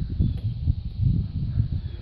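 Wind buffeting the microphone: an uneven low rumble with no clear pitch.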